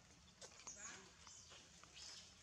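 Faint macaque calls: a few short high-pitched squeaks that fall in pitch, with soft low grunts.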